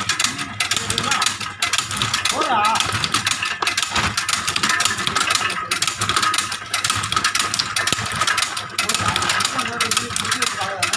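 Semi-automatic cashew cutting machine running with a steady mechanical clatter, broken by a short pause about once a second as it cycles.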